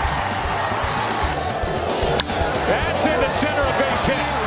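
Baseball broadcast audio: steady crowd noise with music underneath, and a single sharp crack about two seconds in as the bat meets the pitch.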